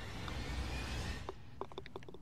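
A short putt: a light click of the putter on the golf ball a little over a second in, then a quick run of rattling clicks as the ball drops into the hole. Wind noise on the microphone runs underneath.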